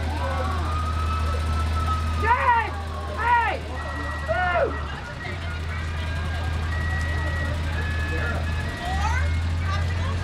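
Steady low rumble of slow parade vehicles passing on a wet street, including a small utility vehicle, with people's voices calling out briefly and a few short, steady high tones in the middle.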